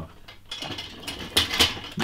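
Metal hand tools rattling and clicking in a rapid, irregular clatter, loudest about a second and a half in.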